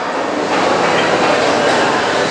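Steady applause from a seated audience, a dense even clatter of many hands clapping, filling a pause in a speech.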